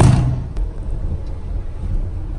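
A sharp thump at the start, then the steady engine and road rumble of a van heard from inside its cabin while it drives.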